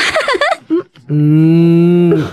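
A person's voice: a quick exclamation, then one long, level, drawn-out vocal sound of about a second.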